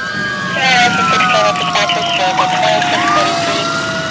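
Police car siren sounding a slow wail, its pitch sinking over the first three seconds and climbing again near the end.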